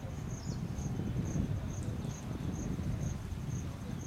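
An insect chirping in a steady high-pitched pulse, about two or three chirps a second, over a low uneven rumble.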